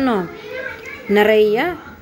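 Speech only: a woman's voice talking in two short stretches, the second starting about a second in.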